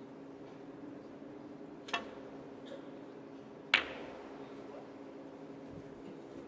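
A snooker shot: the cue tip strikes the cue ball with a soft click about two seconds in, then, nearly two seconds later, the cue ball hits a red with a louder, sharp click that rings briefly. A low steady background hum runs underneath.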